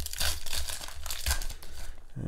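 Foil wrapper of a Pokémon trading-card booster pack crinkling and crackling as it is pulled open by hand.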